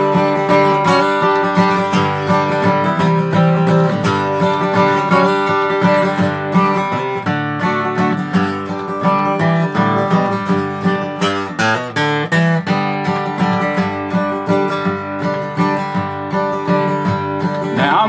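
Acoustic guitar strummed in a steady country rhythm: an instrumental break between the sung verses of the song.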